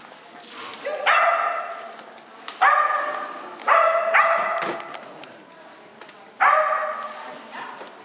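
A dog barking about five times while running an agility course, each bark sharp and trailing off in the hall.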